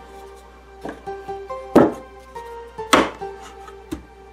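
Background music with a steady melody, over which come two sharp wooden knocks, about two and three seconds in, as the wooden block holding the magnet is set down into its wooden tray.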